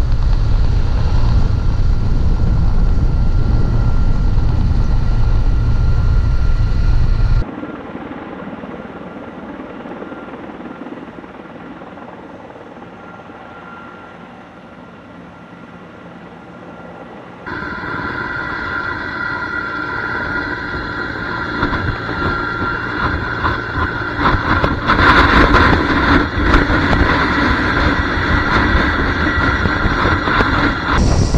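Heavy-lift helicopter flying with a slung load. At first it is heard under heavy wind rumble on the microphone, then faint and distant for about ten seconds, then closer with a steady high turbine whine over the rotor noise that grows louder toward the end.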